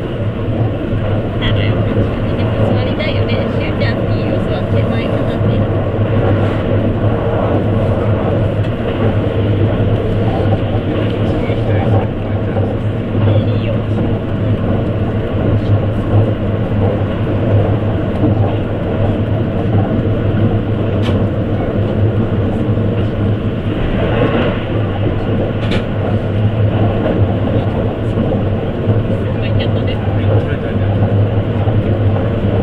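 Running noise of a JR East E257-series limited express electric train at speed, heard from inside the passenger car: a steady rumble of wheels on rail under a constant low hum.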